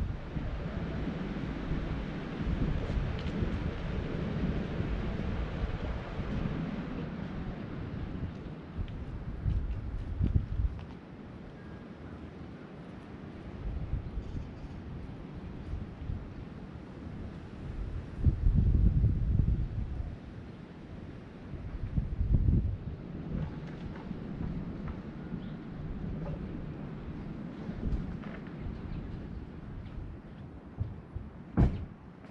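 Wind buffeting an action camera's microphone: a low rumble that comes and goes in gusts, with the strongest gusts about two-thirds of the way through.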